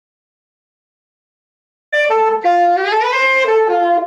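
Silence for about the first two seconds, then a saxophone starts playing a melody of held notes that step up and down in pitch.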